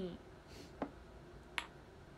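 Two short, sharp clicks, a little under a second apart, in a quiet room.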